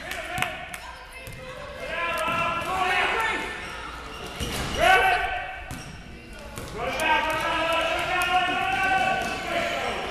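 Basketball dribbling on a gym floor, the bounces echoing around a large hall, with several drawn-out shouting voices, the loudest about five seconds in.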